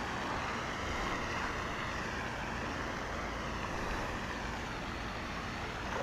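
Steady rushing outdoor background noise with no distinct events.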